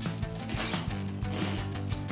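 Crunching of a crisp snack chip being bitten and chewed: quick, irregular crackly clicks. Background music runs underneath.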